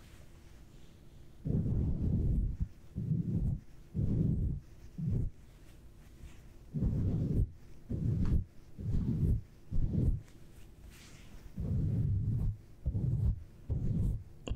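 A soft cloth rubbed and wiped over the microphone, giving about eleven muffled swishing strokes. They come in short runs with brief pauses, starting about a second and a half in.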